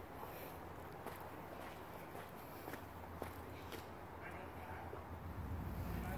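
Faint footsteps on packed dirt, with a few light clicks scattered through and low handling rumble growing near the end.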